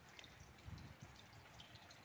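Faint light rain: a quiet steady patter with scattered drips, and a soft low thump a little before the middle.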